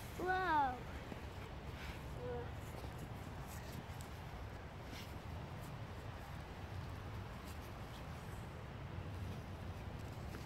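A short, high voiced call in the first second, rising then falling in pitch, and a fainter brief one about two seconds in; otherwise a low steady rumble.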